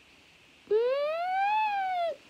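A single siren wail that rises in pitch over about a second and eases slightly down at the end, for an ambulance being summoned.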